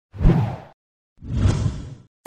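Two whoosh sound effects, one after the other with a short silent gap between them, each a brief rush of noise that swells and fades.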